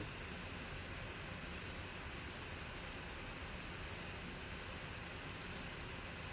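Steady low hiss and hum of background room noise, with a faint brief rustle about five seconds in.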